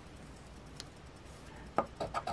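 A coin tapped down on a scratch-off lottery ticket on a wooden table, one sharp click near the end after a quiet stretch with a faint tick about halfway.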